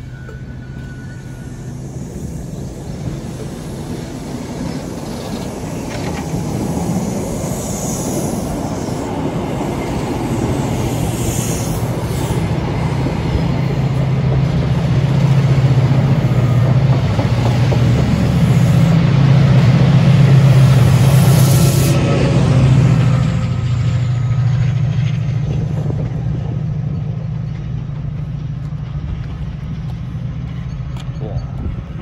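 Chiltern Railways train of Mark 3 coaches rolling past at low speed, wheels on rails over a steady low diesel engine drone. The drone grows louder as the locomotive end of the train draws near, is loudest about 20 seconds in, and then fades.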